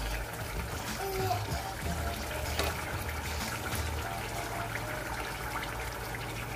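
Pot of tomato stew simmering on the stove with a steady liquid bubbling, and faint music underneath.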